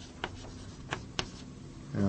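Writing on a board: a few short, sharp taps and strokes as the lecturer draws.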